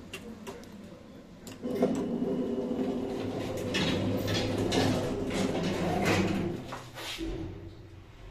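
ShchLZ passenger lift: a few light clicks of the car's push-buttons, then the automatic sliding doors closing, the door mechanism running steadily for about five seconds. It ends with a low thump as the doors shut.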